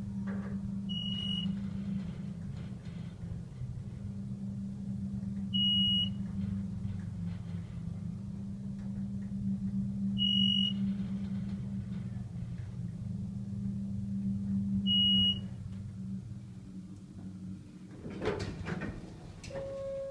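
A 1988 Otis Series 1 hydraulic elevator's pump motor running with a steady low hum as the car rises, then shutting off about 16 seconds in once the car has levelled at the floor. Over it, a short high beep sounds four times, about every four and a half seconds.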